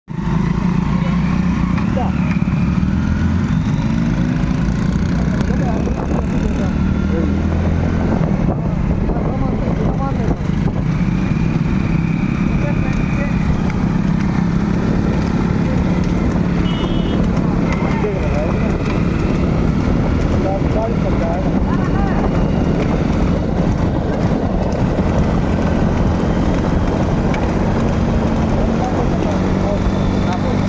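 Motorcycle engine running steadily at speed, with heavy wind rush and indistinct voices mixed in.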